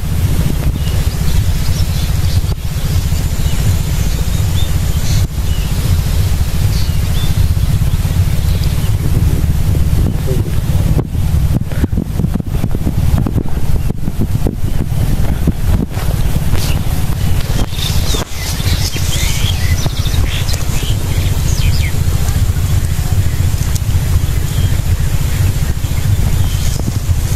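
Wind buffeting the microphone outdoors: a loud, steady, fluttering low rumble.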